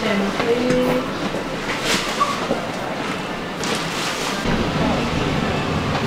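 Shop ambience: a steady background hum with faint voices of other shoppers, and a low rumble that comes in about two-thirds of the way through.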